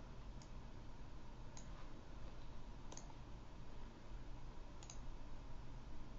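Faint computer mouse clicks, four or five spread over a few seconds, over a steady low hum.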